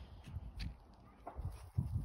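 A small dog sniffing and nosing through dry grass and dirt: faint rustles and small clicks, with low muffled thumps growing louder near the end.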